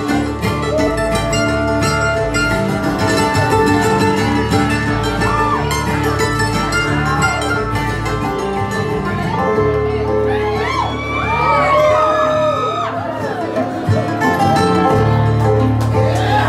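Live bluegrass band playing an instrumental break with no singing: square-neck resonator guitar (dobro), upright bass, acoustic guitar, mandolin and banjo. Between about ten and thirteen seconds in, a run of sliding, bending notes stands out above the band.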